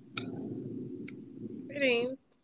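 Low steady background hum of a video-call line with a couple of sharp clicks, then a short vocal sound from a woman near the end.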